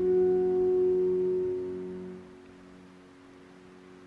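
A single keyboard chord struck once and held for about two seconds, then fading away to a faint ring.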